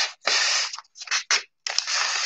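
A sheet of thin paper being handled and rustled, with a few short crackles and two longer rustling sweeps.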